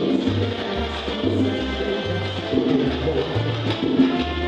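Live salsa band playing: a bass line stepping through low notes about every half second under timbales and percussion, with sustained chords above.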